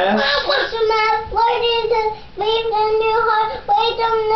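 A toddler's high voice reciting a Bible verse in a drawn-out sing-song, holding each of several words on a steady pitch with short breaks between them.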